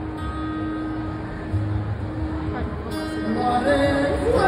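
Acoustic guitar strummed live through a PA, an instrumental stretch between sung lines, with a voice coming back in near the end.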